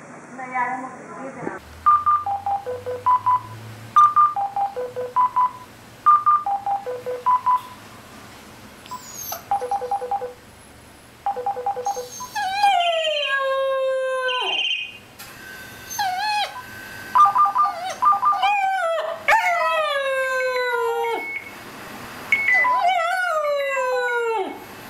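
A cordless phone handset plays a short beeping ringtone melody over and over. From about halfway on, a German Shepherd puppy howls along to it. Each howl is a long note that slides down in pitch, several in a row, trading off with the ringtone.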